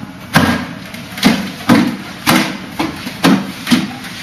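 Hands and forearms striking a Wing Chun wooden dummy (mook yan jong), a wooden trunk and arms mounted in a wooden frame, giving sharp wooden knocks. There are about seven in quick succession at an uneven rhythm, some in close pairs.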